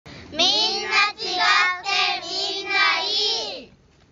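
Children's voices singing a short jingle in a few high phrases, stopping about three and a half seconds in.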